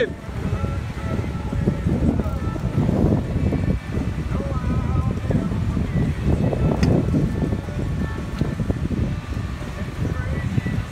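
Wind buffeting the microphone on an open boat, a steady, uneven low rumble, with faint music underneath.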